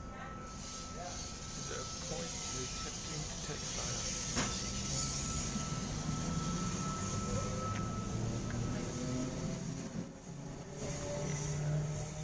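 Four-car NSW TrainLink V set double-deck electric train pulling out and running past close by: a steady rumble with a low motor hum, and one sharp click about four seconds in. The sound eases briefly near the end as the last car goes by.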